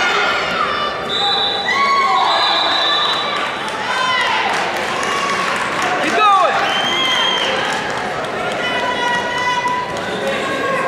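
Wrestling shoes squeaking and scuffing on the mat as two wrestlers push and circle each other. Several squeaks are held for up to about a second, and people's voices are shouting throughout.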